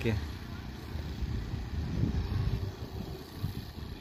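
Outdoor background noise in an open park: a steady low rumble with nothing standing out.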